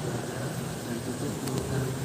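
Indistinct, muffled voices over a steady low hum, with a light click about one and a half seconds in.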